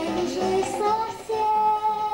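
A young girl singing a song into a microphone over backing music, the melody stepping up and then settling into a long held note in the second half.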